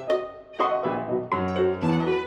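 A violin and a grand piano playing together in a classical duo, sustained notes broken by several sharply attacked notes.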